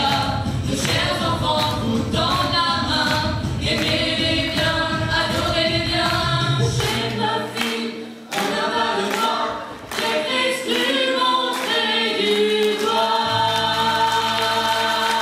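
A group of children singing together as a choir, with two brief drops in the singing a little past the middle.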